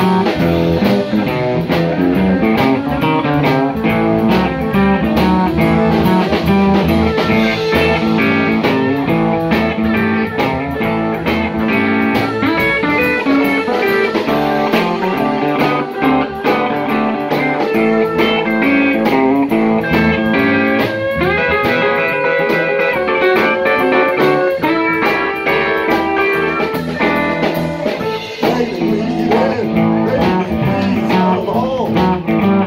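Live electric blues band playing: electric lead guitar lines over a second electric guitar, electric bass and drum kit, with a steady cymbal beat.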